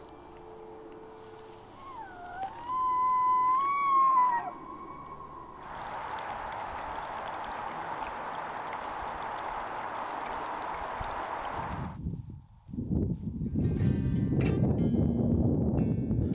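A bull elk in rut bugling: one high whistling call that dips, then climbs and holds for about two and a half seconds before breaking off. A steady rushing noise follows, then rustling near the end.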